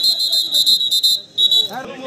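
Referee's pea whistle: one long, trilling blast, then a short second blast, ending the raid after the raider is tackled.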